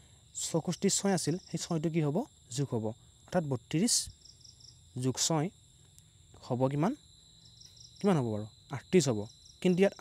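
A man's voice speaking in short phrases over a steady high-pitched chirring of crickets, with a few short pulsed chirps, one about three seconds in and another about six seconds in.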